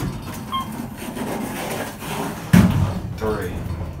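A click as a floor button is pressed, then the Otis elevator car doors sliding shut with a rumble. They end in a loud thump about two and a half seconds in.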